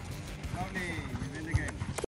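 Children's voices calling out during a passing drill, with a soft thud of a ball being kicked on a hard dirt court about one and a half seconds in.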